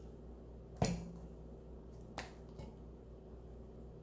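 Sharp plastic clicks from a spice jar's flip-top shaker cap being opened: a loud click about a second in, a softer one a little over a second later, and a faint tick after it.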